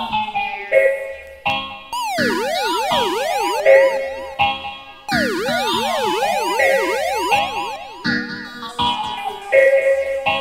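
A home-built Lickshot dub siren (Nold's design) sends repeated up-and-down pitch sweeps, about two a second, through a Boss RDD-10 digital delay, so the echoes overlap. Stepped siren tones come near the start and the end, over a reggae backing track.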